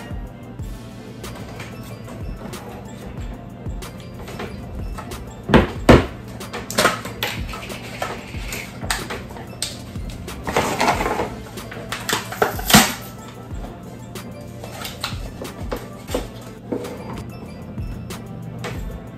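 Background music with knocks and scrapes from a Pringles can being handled as a chip is taken out of it. The sharpest knocks come about six seconds in and again near thirteen seconds.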